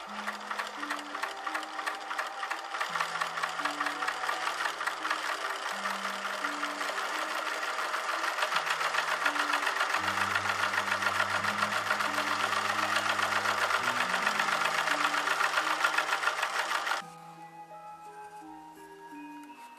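Global WF1575 industrial binding sewing machine stitching binding tape over a leather edge: a fast, even run of needle strokes that grows louder about halfway through and stops suddenly about a second before the end. Background music with low notes plays throughout.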